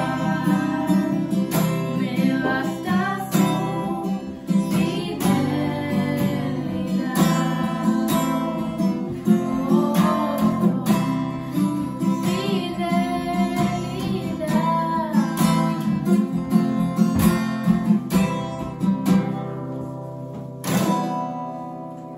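Acoustic guitar strummed with a young woman singing over it. Near the end a last strummed chord is left to ring and fade out.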